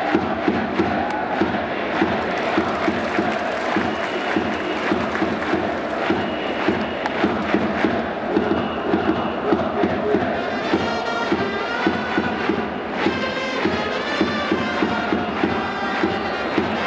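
Japanese baseball cheering section chanting the batter's cheer song in unison, over a steady drum beat of about two strikes a second. Trumpets play the tune more clearly from about ten seconds in.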